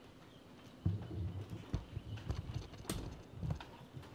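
A run of irregular dull thumps with a few sharper knocks, starting about a second in and lasting under three seconds, like movement on wooden boards.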